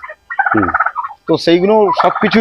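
Domestic poultry calling: a rapid rattling call that comes twice in quick succession within the first second.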